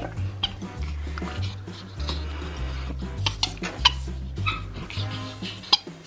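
Background music with a stepping bass line. Over it come several short, high squeaks from a capuchin monkey being tickled on its belly.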